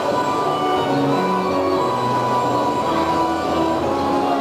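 Carousel ride music: a melody of held notes that changes pitch every half second or so, at a steady level.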